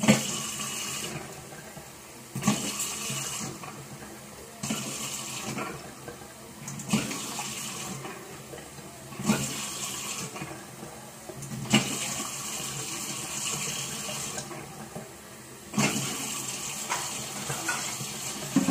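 Kitchen tap water running and splashing into a pot in repeated spells of one to three seconds, each starting with a short knock, as rice is washed before cooking.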